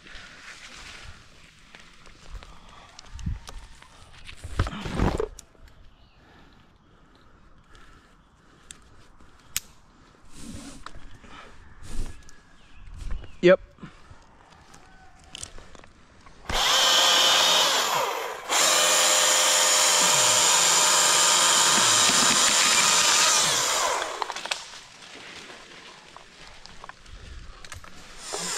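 Husqvarna T542i battery top-handle chainsaw running at full speed with a steady, even whine, in a short run of about two seconds and then, after a brief dip, a longer run of about five seconds that cuts off suddenly. Before it, only scattered faint knocks and clicks.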